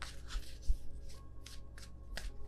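A deck of tarot cards being shuffled by hand: a quick series of soft papery rustles, as a card is sought for the next draw. Faint background music runs underneath.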